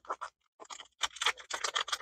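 Foil-laminate MRE peanut butter pouch crinkling as it is squeezed and kneaded by hand, a quick, uneven run of small crackles. The kneading works the old peanut butter, which has gone hard at the ends, to mix it up.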